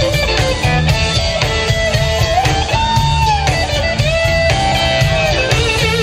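Live blues band playing, with an electric guitar lead of long, bent, sustained notes over electric bass and drums.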